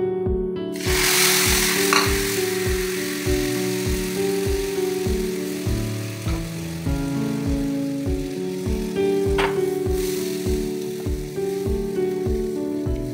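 Milk hitting a pan of hot fried vermicelli, sizzling suddenly about a second in, loudest at first and then settling to a softer sizzle. Background music with a steady beat plays throughout.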